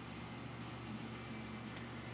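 Taco circulator pump running with a faint, steady low hum, barely above the basement's ambient noise.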